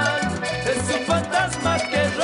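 Live band playing upbeat Latin tropical dance music, with a steady bouncing bass line, percussion and a melodic line over it.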